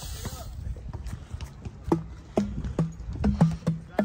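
Outdoor playground tube drums, a pair tuned to two different pitches, being struck: about six short pitched hits starting about two seconds in, switching between the lower and the higher drum.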